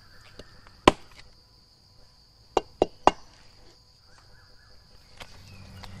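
A knife blade chopping into the bark of an agarwood (Aquilaria) tree, cutting it away around an inoculation hole: one sharp strike about a second in, then three quick strikes close together around three seconds in. A steady high insect buzz runs underneath.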